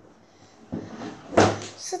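A loud thump, a knock against furniture or a cupboard, about one and a half seconds in, with rustling and handling noise before it and another short knock near the end.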